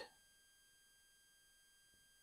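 Near silence: room tone with faint steady high-pitched tones.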